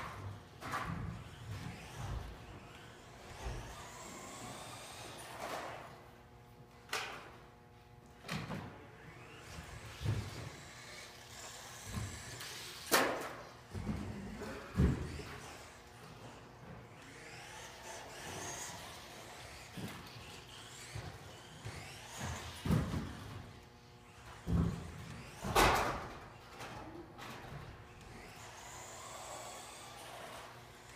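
WLtoys L959 (LiteHawk Blast) electric RC buggy lapping a track: its small motor whines up and down in pitch with the throttle. Several sharp knocks are spread through, the loudest about halfway and near the end, as the car lands jumps or strikes the track.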